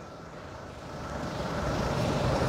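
A passing vehicle's engine and road noise, growing steadily louder from about a second in as it approaches.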